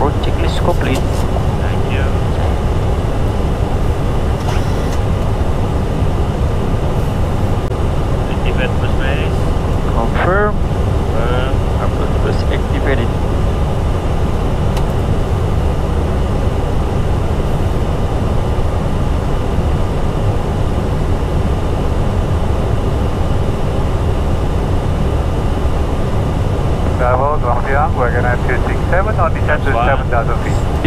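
Steady cockpit noise of an Airbus A320 in flight: a dense, even rumble of airflow and engines with no change in level, with brief voices heard a few times over it.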